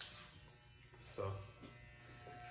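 Corded electric hair clippers with a number three guard clicked on and running with a faint steady buzz.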